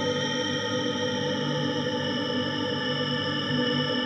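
Ambient synthesizer music: a sustained chord of many held tones, steady and unbroken, with a thick, bright timbre.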